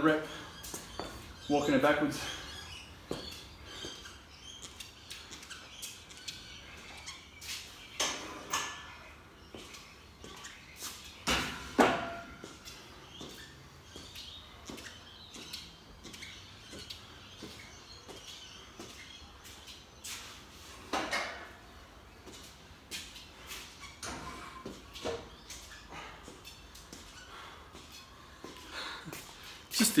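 A quiet garage gym with scattered footsteps and small knocks on a concrete floor, the loudest about twelve seconds in, and a few short vocal sounds from a man between them.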